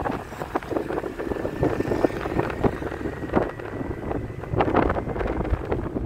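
Wind buffeting the microphone on a moving motorbike, with the motorbike's engine and road noise underneath in uneven gusts.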